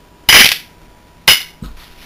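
Base-ten unit cubes dropped into a cut-glass bowl: a loud clatter about a third of a second in, a second sharper clatter just over a second in, and a small knock soon after.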